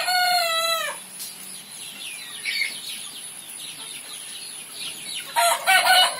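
Chickens calling: a rooster's crow ending with a slight fall in pitch about a second in, faint scattered clucks from the flock, and another loud burst of crowing starting near the end.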